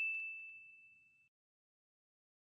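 The fading ring of a single bright bell-like ding, a sound effect for a subscribe-button animation, dying away within about a second.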